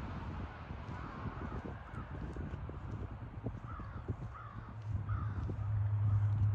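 A crow cawing, a run of short calls about every half second in the second half, over low microphone rumble and handling knocks. A low steady hum swells in near the end.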